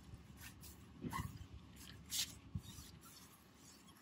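Faint, short hissing strokes of a trigger spray bottle and a detailing brush working tire dressing on a tire, a few separate bursts, with a brief squeak about a second in.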